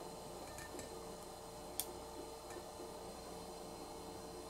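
Quiet room with a faint steady hum, and a few soft clicks from fingers handling boiled edamame pods in a wire strainer, one sharper tick a little under two seconds in.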